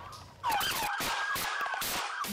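Police car siren picked up by an officer's body-worn camera, starting suddenly about half a second in as a wavering tone, with a few short knocks over it.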